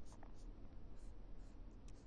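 Felt-tip marker drawing short hatching strokes on paper, a faint scratching.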